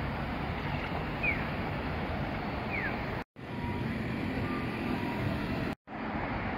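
Road traffic on a city street: a steady rush of passing cars, with a short falling chirp heard twice in the first half. The sound drops out abruptly twice.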